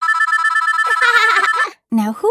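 Mobile phone ringing with a high electronic trill on two steady pitches, which stops just before the end. A short vocal sound overlaps in the second half.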